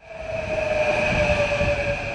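İZBAN electric commuter train passing, a steady whine over a low rumble that swells in at the start and eases off toward the end.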